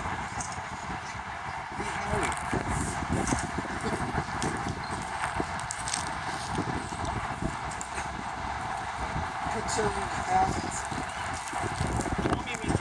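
Open-air ambience: a steady hiss with irregular low rumbling from wind on the microphone, and faint distant voices.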